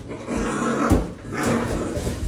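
Raccoon growling, with a knock a little under a second in.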